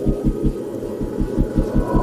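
The engine of the vehicle being ridden in, heard from on board as a rapid, even low throb of about ten pulses a second.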